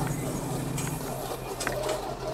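Jensen Interceptor's V8 engine running as the car drives off across the grass arena, a steady low hum with faint clicks over it.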